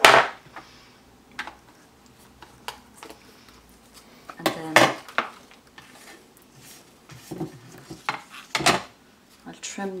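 Knocks and clatter of papercrafting tools being put down and moved about on a plastic cutting mat and paper trimmer: a dozen or so separate hard taps, the loudest right at the start, a busier cluster about halfway, and a few more near the end.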